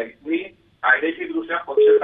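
Speech: a person talking in a narrow, telephone-like band, with a brief pause about half a second in.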